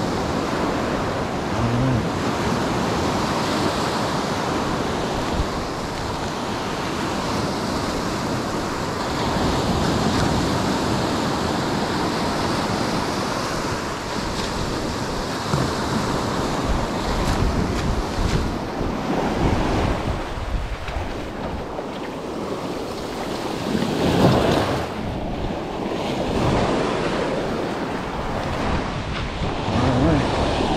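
Ocean surf breaking and washing up a beach, with wind buffeting the microphone; one wave comes in louder about three quarters of the way through.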